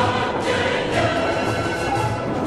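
Background music: a choir singing held notes.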